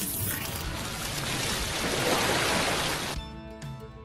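Intro music with a sound effect under a channel logo: a dense noisy swell that cuts off abruptly about three seconds in, giving way to quieter music with steady held notes.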